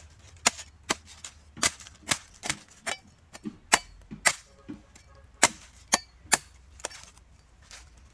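Machete chopping into the husk of a young green coconut: a run of sharp cuts, about two a second, that stop near the end.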